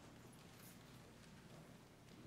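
Near silence: faint church room tone with a few soft taps, such as footsteps on the floor.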